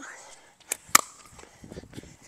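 Pickleball being played: two sharp hollow pops about a quarter second apart near the middle, from the plastic ball bouncing on the hard court and coming off a paddle, then faint shuffling steps.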